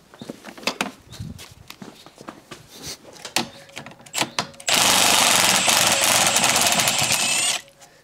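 A few light clicks and knocks, then a cordless impact wrench hammering for about three seconds on a tight 17 mm rear brake caliper carrier bolt, starting a little past halfway and cutting off sharply.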